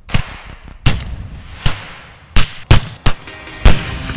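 Gunshots from a firearm, about seven single shots at irregular intervals, each sharp and followed by a short ring-out.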